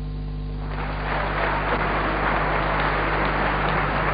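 The orchestra's last held chord fades away, and under a second in a concert audience starts applauding, with steady, dense clapping. A low electrical hum runs under it all.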